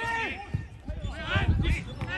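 Football players and spectators shouting across the pitch, with the thud of a football being kicked about half a second in.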